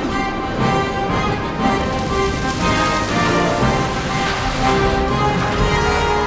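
Orchestral film score: full symphony orchestra playing sustained, layered chords.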